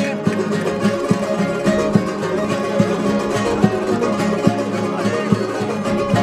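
Instrumental break in a parranda, an Almerian seguidilla in triple time: guitars strumming the rhythm while plucked Spanish lutes (bandurria and laúd) play the melody, with no singing.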